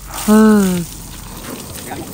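A man's short exclamation, "Ha", falling in pitch, over a faint steady hiss.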